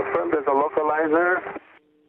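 A pilot's voice over aircraft radio, thin and cut off above the voice range, saying "Affirmative, the localizer". Near the end the voice stops and a faint steady hum of two low tones remains on the channel.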